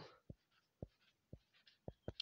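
Faint, soft taps of handwriting on a touchscreen, four of them about half a second apart.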